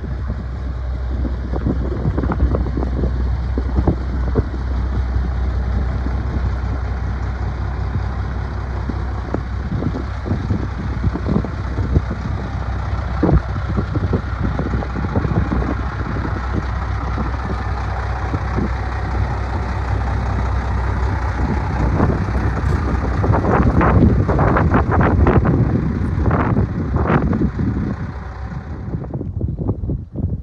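International 4900 truck's diesel engine idling steadily, with scattered knocks and rustles over it.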